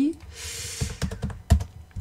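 Computer keyboard being typed on: a short run of key clicks, with one sharper key strike about one and a half seconds in.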